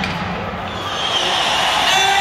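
Hockey arena ambience during pregame warmup: crowd chatter echoing in the big hall, with thuds from pucks and sticks on the ice and boards.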